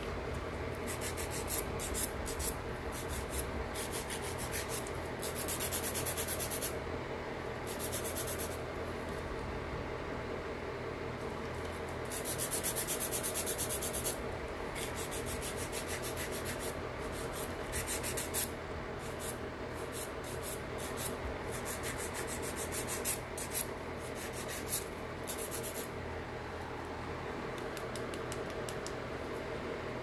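Hand nail file rasping back and forth across a fingernail, in spells of quick scratchy strokes with a few longer runs of filing.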